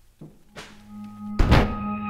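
A low held music tone, then one loud, heavy thunk about a second and a half in, as the film's score swells.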